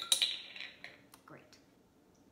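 Clinks and clicks of a glass measuring cup and a plastic bottle of vegetable oil being picked up and handled on a wooden table. The clatter is loudest in the first half second, followed by a few lighter clicks before it goes quiet.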